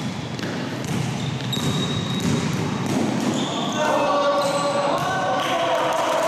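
Basketball being dribbled and bouncing on an indoor court floor in a large sports hall, a run of short impacts, with players' voices and a few short high squeaks.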